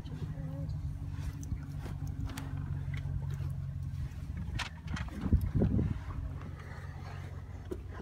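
A vehicle's engine idling steadily, heard from inside the cab with the window open. A few faint clicks and a short low burst come about five seconds in.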